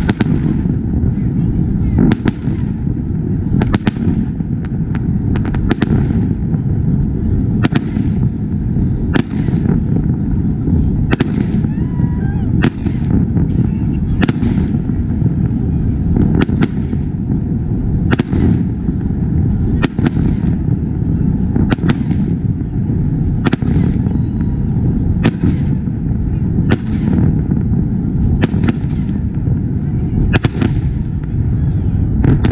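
Aerial fireworks: a steady run of sharp bangs from shells bursting overhead, roughly one or two a second, over a continuous low rumble.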